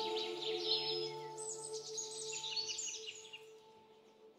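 A small bird chirps in quick runs of short, repeated notes over a soft, sustained ambient music drone. Both fade away to near quiet near the end.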